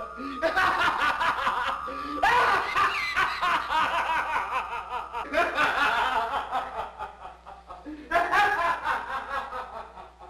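A man laughing loudly and scornfully in four long bouts with short breaks between them.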